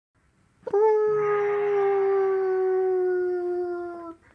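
A single long howl that starts about two-thirds of a second in and is held for about three seconds, sinking slowly in pitch before it fades.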